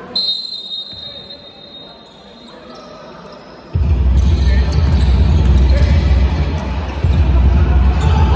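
Referee's whistle, one sharp high shrill blast just after the start, ringing away over about two seconds in the hall. A little under four seconds in, a loud low rumble starts abruptly and runs on under the basketball play.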